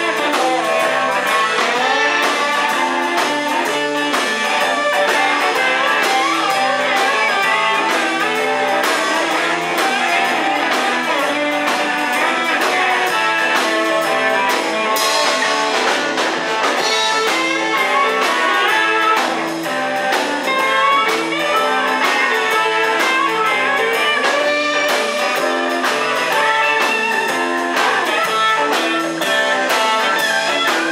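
Live blues band playing an instrumental passage: electric guitars over a drum kit, with a harmonica coming in near the end.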